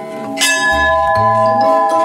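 Hanging brass temple bells ringing with long sustained tones, one struck afresh about half a second in.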